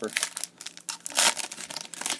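Foil wrapper of a football trading-card pack crinkling as it is worked open by hand, with a louder stretch of crinkling a little past a second in.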